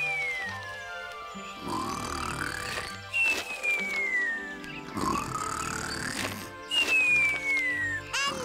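Cartoon snoring over light background music: a rasping snore drawn in on a rising pitch, then a whistle falling in pitch on the breath out, repeated about every three seconds, with three whistles in all.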